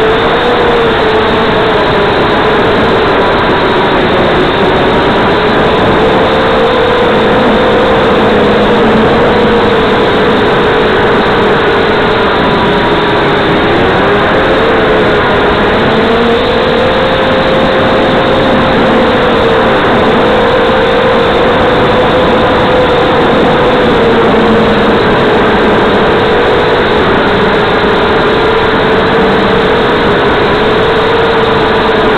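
FPV drone's motors and propellers whining steadily, the pitch wavering slightly with throttle, over a constant rush of air noise on the onboard microphone.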